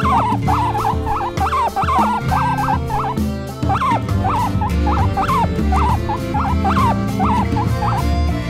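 Guinea-pig squeaks in the Molcar style: short calls that rise and fall, about two a second, over background music with a steady beat.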